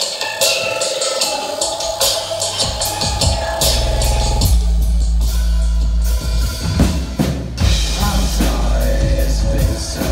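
Intro of a dark goth-trap song played live with a drum kit: quick, regular ticking percussion at first, then a deep sustained bass comes in about three seconds in and carries on under the drums.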